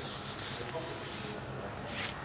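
A DuraPlus fibreglass tent pole being drawn out of its fabric sleeve: a soft rubbing swish of pole on nylon for about a second and a half, then a second short swish near the end.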